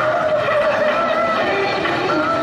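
Pop dance music played over a stage sound system, with a vocal line holding and bending notes over a dense backing.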